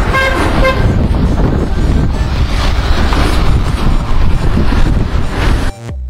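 Downtown street traffic noise, a steady heavy rumble, with a short horn toot just after the start. The sound cuts off abruptly near the end.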